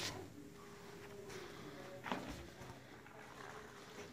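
Quiet room noise with a faint steady hum and one light knock about two seconds in.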